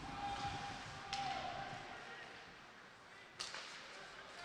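Ice hockey play on a rink: skate blades scraping the ice, with two sharp cracks of stick and puck, one about a second in and one near the end.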